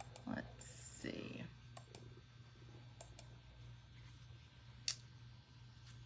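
Faint computer mouse clicks: two quick double clicks about a second apart, then a single sharper click near the end. A brief soft rustle comes about a second in.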